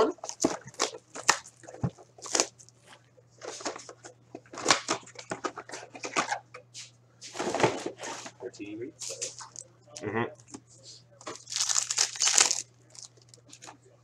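Foil wrappers of Upper Deck hockey card packs crinkling and tearing as a blaster box is opened and packs are torn open, a run of irregular rustles and rips, with a faint low hum underneath.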